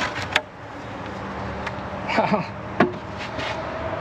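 A few sharp clicks and knocks from the polystyrene lid of a poly beehive as it is lifted off and set aside, over a steady background hiss.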